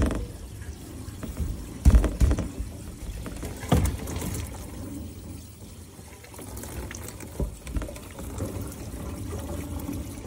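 Water from a garden hose running into and through a homemade PVC first flush diverter, filling it and flowing on into an IBC rain tote. A few dull knocks come through, the loudest about two seconds in, others near four and seven seconds.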